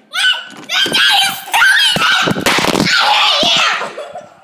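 A child's high-pitched voice, loud and nearly continuous, shouting and wailing without clear words.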